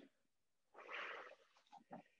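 Near silence: room tone, with one faint, short hissing noise about a second in.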